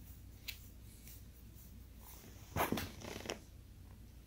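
A pet dog being given a belly rub lets out a short grunt about two and a half seconds in; otherwise the room is quiet.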